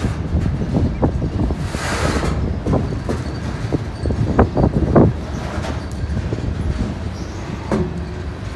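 Heavily loaded freight-train flatcars rolling past close by at low speed in street running, a steady low rumble of steel wheels on rail. A run of short sharp clanks comes through the middle, the loudest about five seconds in.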